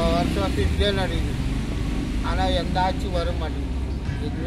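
A man's voice speaking in short phrases over a steady low rumble.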